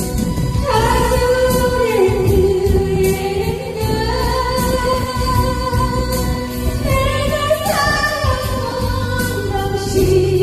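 A woman singing a Korean trot song into a handheld microphone over backing music, holding long notes and sliding between pitches.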